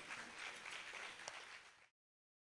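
Faint audience applause that fades and then cuts off abruptly near the end into silence.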